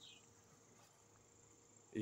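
Near silence outdoors, with a faint, steady, high-pitched insect drone.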